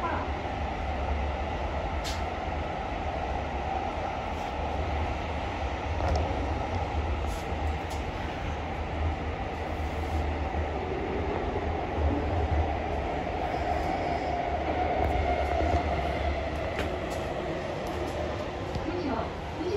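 Kyoto Municipal Subway Karasuma Line 20 series train heard from inside the car while running: a steady rumble of wheels and running noise. Near the end, a tone from the drive falls slightly in pitch as the train brakes for the next station.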